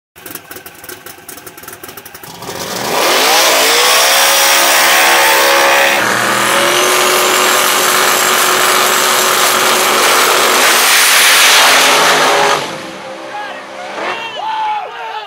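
Drag race car engines revving up about two and a half seconds in and held at high rpm on the starting line, with a high steady whine over them. The sound climbs once more near the end as the cars launch, then falls away sharply.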